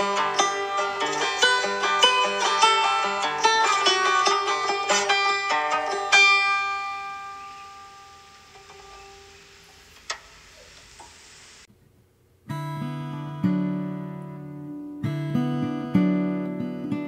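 Fingerpicked acoustic string music: a run of quick picked notes ends on a chord about six seconds in, which rings and fades away over several seconds, with a single click as it dies. After a brief silence a new piece begins on acoustic guitar with lower strummed chords.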